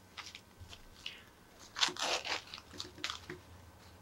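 Hands handling a 1/6 scale action figure's thin fabric jacket: a scatter of short rustles and crinkles, the loudest burst about two seconds in.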